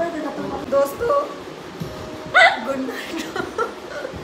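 Short vocal yelps and laughter, with a loud sudden squeal that rises in pitch about two and a half seconds in.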